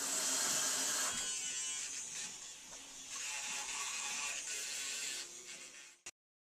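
Electric toothbrush running, starting abruptly and dying away near the end.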